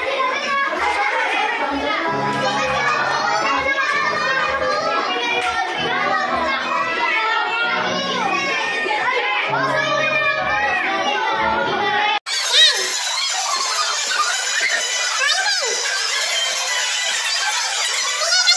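Pop music with a steady beat playing over a crowd of excited children shouting and laughing. About twelve seconds in, the music stops abruptly and only the children's shrieks and chatter remain.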